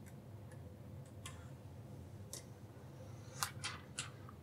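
Protective plastic film being peeled off an LCD screen: about five faint, scattered ticks and crackles over a low steady room hum.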